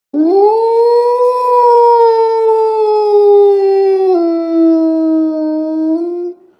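A large black dog howling: one long howl that rises at the start, slides slowly down, then drops to a lower pitch about four seconds in and holds there.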